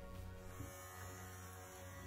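Cordless electric dog clipper running with a faint, steady buzz.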